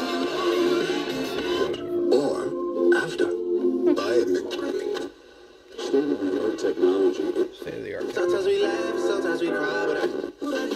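FM radio broadcast of a song with vocals, coming from a Magnavox handheld radio played through a turntable's speakers. The sound drops out briefly about halfway through, then comes back.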